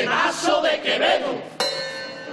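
A murga group playing kazoos (pitos) together in a buzzing chorus of wavering pitched lines, then a sharp hit about a second and a half in that rings on.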